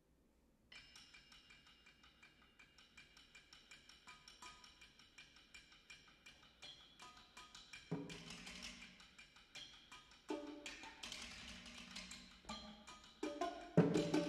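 Percussion ensemble playing softly: fast, even taps on small pitched percussion begin about a second in. From about eight seconds in, louder, lower-pitched strokes join in bursts, and the playing grows steadily louder toward the end.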